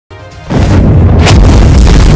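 Cinematic intro sting: a soft musical lead-in, then a loud deep boom about half a second in that rumbles on under music, with a brief whoosh near the middle.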